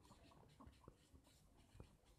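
Near silence, with a few faint ticks and scratches of a marker writing on a whiteboard.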